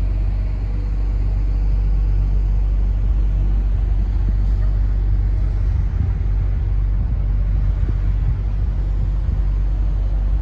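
Motor yacht's engine running steadily underway, a loud, low, even drone.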